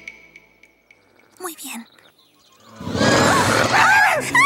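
Background music fades out, and after a near-quiet stretch a loud dog-like growling and yelping sound effect starts about three seconds in, its pitch wavering up and down.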